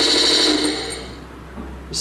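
A Hooben 1/16 RC tank's built-in sound unit playing a simulated gunfire effect, a steady rapid rattle that fades away over the second half.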